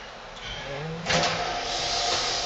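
Elevator running: a faint motor whine as the doors close, then from about a second in a steady rushing hum as the car moves.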